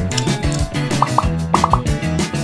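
Upbeat background music with a steady beat. From about a second in, five short, quick rising blips sound over it, in the manner of cartoon plop effects.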